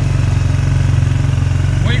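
ATV engine running steadily at a low, even pace as the four-wheeler travels along a trail, a constant drone.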